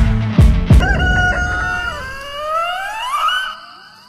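A few closing beats of music, then a rooster crowing once: one long call that rises in pitch near its end.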